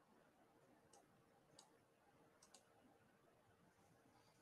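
Near silence: faint room tone broken by four faint, short clicks, the last two close together.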